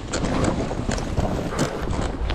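Skis running through deep powder snow, a steady hiss with several short swishes of snow, under wind rushing on the microphone.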